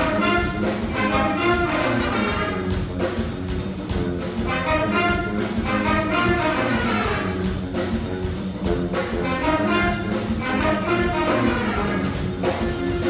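Live brass ensemble of trumpets, sousaphone and saxophone playing a lively piece together, heard from the audience seats of an auditorium.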